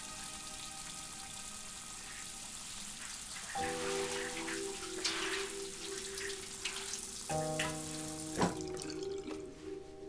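Tap water running into a sink as hands are washed under it, with a few splashes; the water stops near the end. Soft background music with sustained notes comes in partway through.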